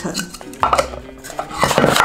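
Stacking tiers of a cylindrical battery storage container knocking and clattering against each other as they are pulled apart and handled: a few short knocks about half a second to a second in, then a denser rattle near the end.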